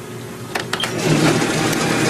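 Office photocopier starting a copy: a few clicks about half a second in, then its feed mechanism running from about a second in.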